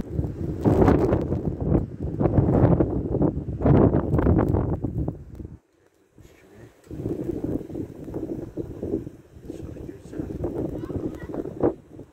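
Gusting wind buffeting the microphone in blowing snow, heavy for the first five seconds, cutting out briefly about halfway through, then coming back in lighter gusts.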